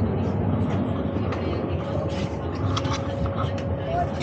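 Steady running noise inside a passenger train carriage, an even rumble and hiss. A faint steady hum comes in partway through, with faint voices in the background.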